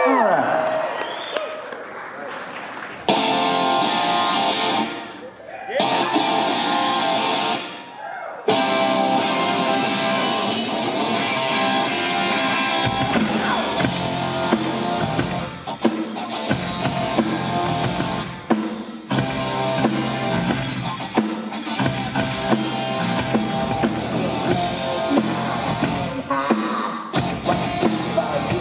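A rock band starts a song live. Guitar-led music stops briefly twice in the first several seconds, then runs on, and bass and drums fill in from about halfway through.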